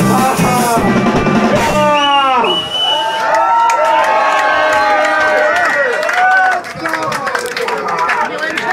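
Punk band playing live, with drums and electric guitar, ends its song about two seconds in on a falling, sliding final note. Then the crowd shouts and cheers, with wavering voices calling out.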